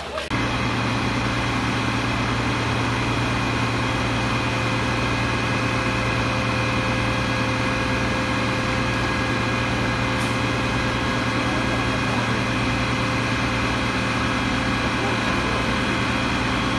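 Heavy diesel machinery engine running steadily at a constant speed, a continuous even drone with no crashes of falling debris.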